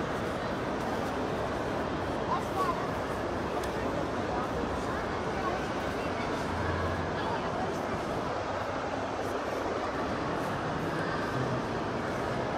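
Steady crowd hubbub in a busy shopping mall: many indistinct voices blending into one continuous din.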